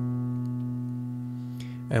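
A single low B piano note held with the sustain pedal, slowly dying away.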